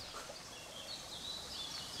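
Faint outdoor ambience: a low steady hiss with a few faint, high bird chirps.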